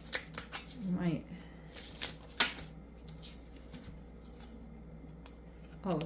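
Tarot cards being handled and drawn from a deck by hand: a run of quick papery snaps and flicks over the first two and a half seconds, the sharpest about two and a half seconds in, then quieter handling.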